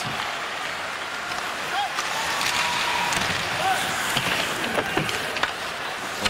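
Hockey arena crowd noise during live play: a steady crowd murmur with a few sharp clacks of sticks and puck on the ice.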